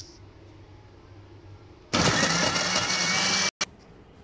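Panasonic mixer grinder motor switched on, running loudly for about a second and a half as it grinds torn bread into crumbs in its steel jar. It starts suddenly about two seconds in and stops abruptly, with one brief extra burst just after.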